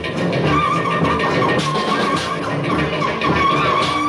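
Live post-punk / no wave band music with drums, and a held, wavering high squealing note over it from about half a second in.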